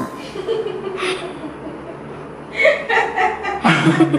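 A man's voice: a drawn-out yell in the first second, then loud chuckling and laughter in the second half.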